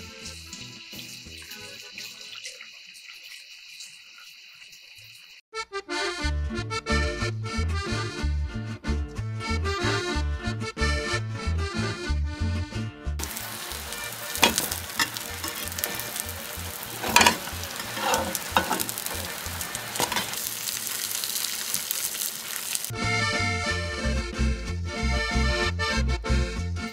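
Corn tortillas sizzling and crackling as they fry in a hot pan, a steady hiss through the middle of the stretch. Before and after it, background music with a beat and accordion.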